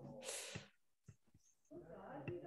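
A person's voice, faint: a breathy, hissing sound in the first half-second, a second of near silence, then a quiet hummed murmur near the end.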